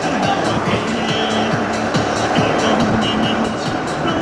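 Music with short held notes over the steady rumble of a car driving.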